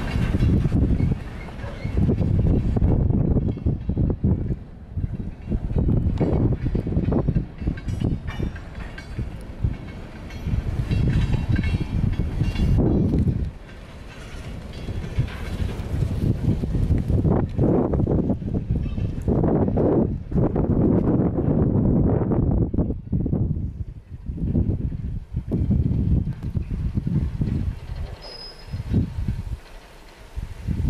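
Freight train rolling past on the rails, its diesel locomotives and cars making a steady low rumble. Heavy, gusting wind buffets the microphone and sets the loudest swells.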